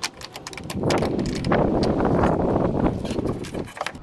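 A 3/8-inch ratchet clicking as it loosens the nut on a car battery's negative terminal clamp. From about a second in, a denser metallic scraping and rattling runs almost to the end as the clamp is worked loose.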